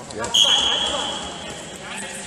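Referee's whistle blown in one long, steady, high blast lasting about a second and a half, stopping the action in a freestyle wrestling bout.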